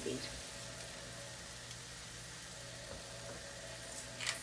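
Chicken in a thick avocado cream sauce sizzling steadily in a pan on the stove while it is stirred with a silicone spatula.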